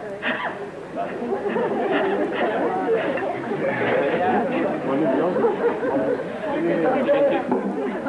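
Many voices talking over one another in a large hall: overlapping chatter of a group.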